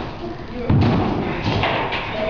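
A thud about three-quarters of a second in as a person tumbles onto the floor after a failed jump into a bin, with voices around it.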